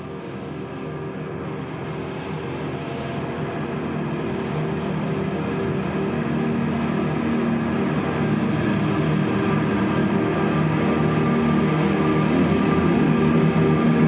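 Drone music: layered, sustained tones held without a break, growing steadily louder throughout.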